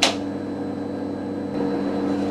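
A sharp click right at the start as the Elliott 803's operate bar is pressed, setting the instruction repeating. Then the steady hum of the running computer, with several low steady tones underneath.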